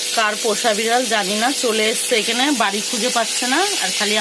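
A woman talking without pause over a steady sizzling hiss of food frying.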